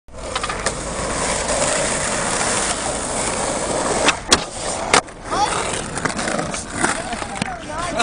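Skateboard wheels rolling on asphalt, then sharp clacks as the board hits a wooden ledge in a tailslide about four seconds in, and a loud slap as it lands back on the ground about a second later. Voices shout and laugh afterwards.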